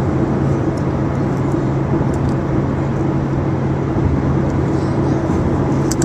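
Steady road and engine noise inside a moving car's cabin: a constant low drone under a wash of tyre noise.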